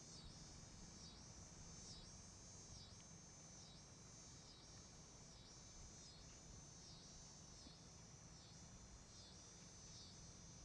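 Faint outdoor insect chorus: a high buzzing that swells and dips in a steady rhythm, a little more than once a second.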